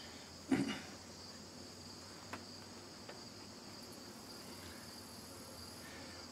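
Steady, high-pitched chirring of insects. About half a second in, a short, louder voice-like sound falls in pitch, and a couple of faint clicks follow.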